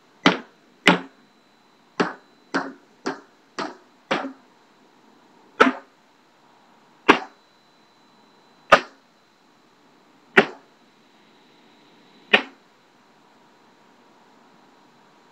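Empty plastic bleach bottle struck by hand as a drum, a baguala beat: a few quick hollow knocks, then single knocks that slow to about one every one and a half to two seconds and stop.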